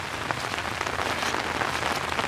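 Steady rain falling on an umbrella held overhead, an even hiss with small irregular taps.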